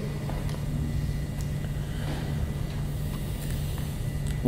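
Room tone: a steady low hum with faint background hiss.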